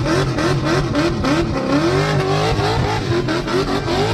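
Car doing a burnout: the engine revs up and down over and over, against the loud, continuous rush of a spinning tyre.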